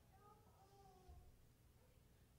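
Near silence: faint room tone with a low hum. There is a faint, short pitched sound in the first second and a faint low thump about a second in.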